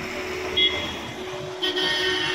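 Bus horn honking: a short toot about half a second in, then a longer honk that starts near the end.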